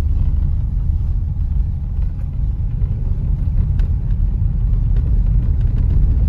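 Steady low road and engine rumble heard inside the cabin of a moving car, with a few faint ticks.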